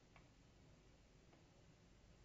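Near silence: faint hiss with two very faint ticks.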